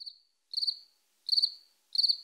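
Cricket chirps, about four short pulsed trills spaced evenly roughly two-thirds of a second apart, over an otherwise dead-silent track: an edited-in 'crickets' sound effect.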